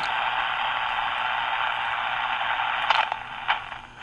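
Steady hiss of band noise from an HF single-sideband receiver's speaker, tuned to a quiet 20-metre band with no station heard. Near the end a few sharp clicks of the front-panel keypad buttons sound as a frequency is keyed in, and the hiss drops away.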